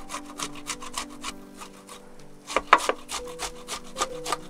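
Block of ham rubbed down the coarse face of a stainless-steel box grater in quick rasping strokes, about four or five a second, with a short pause midway and the loudest strokes just after it.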